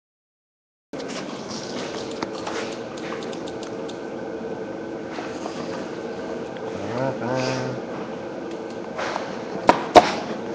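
Dead silence for about the first second, then steady room hubbub with faint voices, and two sharp knocks near the end as the flip clock's case is handled on the table.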